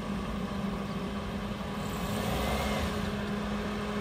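Suzuki Wagon R hatchback's engine running under load as the car crawls up out of deep ruts in loose dirt, steady and getting a little louder about halfway through.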